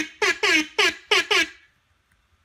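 A man's voice letting out a rapid series of short, high yelps, each one falling in pitch, about four a second, stopping about one and a half seconds in.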